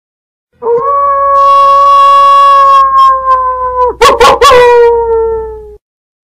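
A long, loud howl held on one steady pitch for about three seconds. About four seconds in it breaks into a brief choppy sound, then a second howl follows, sinking slightly in pitch before it cuts off.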